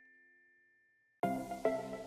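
Ident jingle music: the ringing tail of a chime dies away, a moment of silence follows, then a new jingle starts suddenly about a second in with a run of short notes, about two to three a second.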